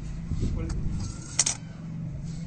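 Bangles on a wrist give a brief bright clink about one and a half seconds in as hands move over the cloth. A steady low hum runs underneath.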